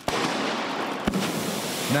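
Rocket engine firing: a steady, loud rushing noise, with a sharp click about a second in.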